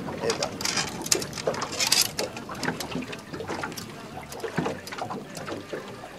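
Short clicks and rattles of a hook being worked free from a boga's mouth by hand, irregular and scattered, over a steady wash of boat and river-water noise.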